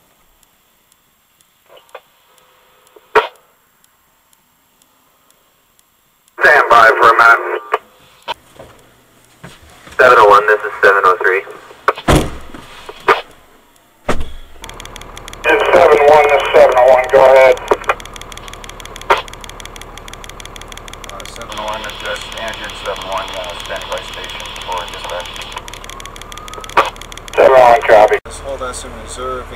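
Two-way radio chatter in short, tinny bursts with clicks between them. From about halfway through, the fire engine's motor runs with a steady low hum under the radio.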